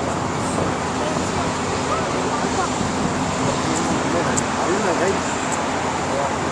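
Steady outdoor din at an even level: distant voices over the constant noise of road traffic below.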